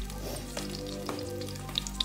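Stuffed eggplant and beaten egg sizzling as they fry in oil in a nonstick pan. A few light clicks come as a metal fork pushes the egg around.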